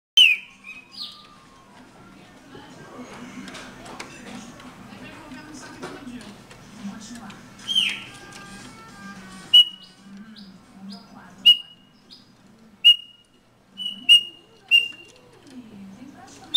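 Chopi blackbird (pássaro preto) calling: loud, sharp whistled notes, a couple of them sliding down in pitch. From about ten seconds in comes a run of short clipped whistles, one every second or two.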